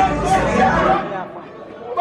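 Several people talking and calling out over each other in a crowd, with the music's low bass dying away in the first second; it drops quieter for about half a second near the end.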